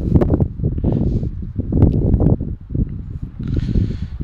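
Wind buffeting the microphone: an irregular low rumble, with a brief rise in hiss near the end.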